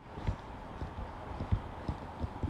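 Footsteps of a person walking on pavement: a steady run of dull thuds, about three a second.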